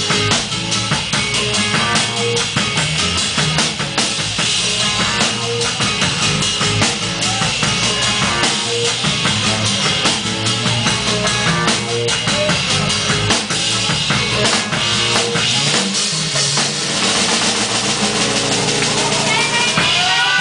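Live band playing an instrumental groove, led by a drum kit played with sticks, with a steady run of drum strokes over bass and other instruments.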